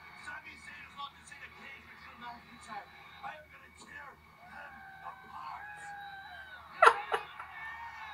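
A man laughing, with a loud, sharp burst of laughter about seven seconds in. Faint voices run underneath.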